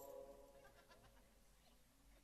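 Near silence between sung lines: the tail of a man's sung note dies away in the first half second, leaving faint room sound.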